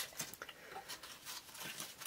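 Faint, scattered small clicks and light taps, several a second, with no steady sound underneath.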